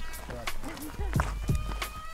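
Footsteps on a dirt-and-gravel trail at a brisk, even pace of about three steps a second. Music with held notes comes in about a second and a half in.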